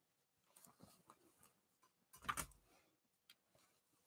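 Near silence: room tone with faint rustling, and one brief soft thump a little over two seconds in.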